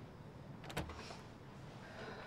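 Quiet room tone with one brief, faint double click about three-quarters of a second in.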